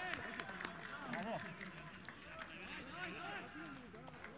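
Several people shouting and calling out at once, their voices overlapping, in celebration of a goal at a football match.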